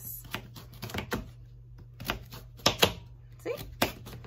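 Kitchen knife dicing raw sweet potato on a plastic cutting board: irregular sharp knocks as the blade goes through the hard potato and strikes the board, the loudest two close together just before the last second.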